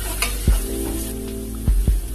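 Food sizzling in a frying pan as it is stirred with a utensil, with three sharp knocks: one about half a second in and two close together near the end.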